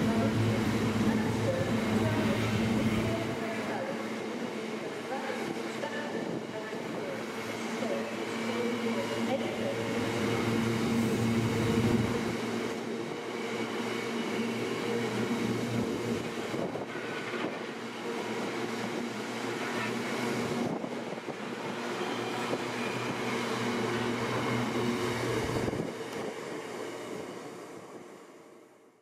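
A freight train's long rake of box wagons rolls past at speed, the wheels rumbling and clattering on the rails. A low drone at the start drops away after about three seconds. The rumble fades out near the end as the last wagon clears.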